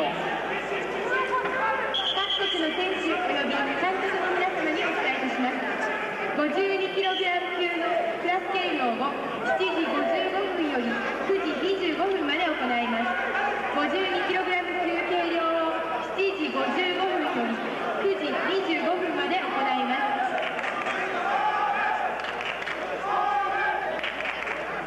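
Speech only: a man talking throughout, with no other sound standing out.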